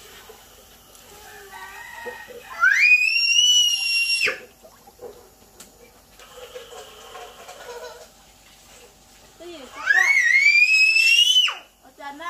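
Two loud, long, high-pitched cries, each rising and then held for about a second and a half before breaking off, about seven seconds apart.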